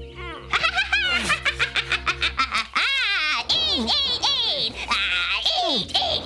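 High, gliding cartoon laughter over orchestral background music, the music's low sustained notes changing about two and a half seconds in.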